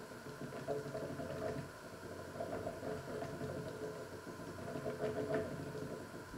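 Water boiling in pots on an electric hob: an uneven bubbling rumble with a few faint knocks.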